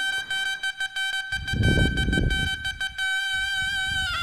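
Wind-instrument music holding one long steady reed-like note, part of a melody played on either side. A low rumble of handling or crowd noise rises and falls in the middle.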